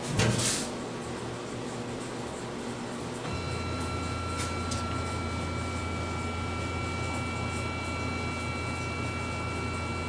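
Laser engraver's gantry and head being jogged between saved positions: a brief rush of noise just after the start, then from about three seconds in a steady low hum with a thin high whine from the machine.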